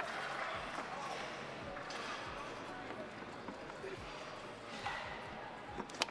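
Scattered soft knocks of a foosball ball being passed and trapped by the rod men on a table soccer table, over the steady murmur of a large hall.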